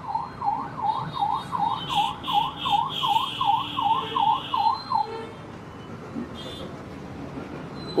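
Emergency vehicle siren sounding a fast up-and-down yelp, about three sweeps a second. It stops about five seconds in, leaving low street background noise.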